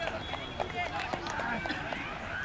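Faint, indistinct voices of people in the open air, with a few soft clicks.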